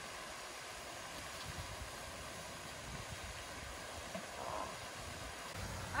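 Quiet, steady outdoor hiss with no distinct event in it.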